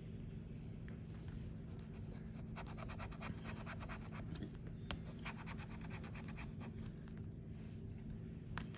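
A bottle opener scratching the coating off a paper scratch-off lottery ticket in quick, rapid strokes, starting about two and a half seconds in. There is one sharp tick midway.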